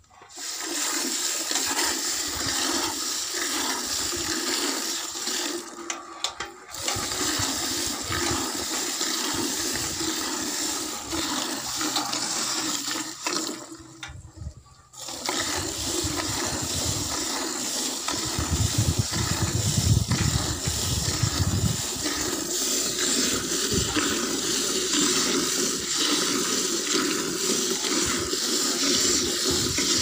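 Jets of milk squirting from a water buffalo's teats into a steel bucket during hand-milking: a steady spray of liquid that breaks off briefly about six seconds in and again around fourteen seconds.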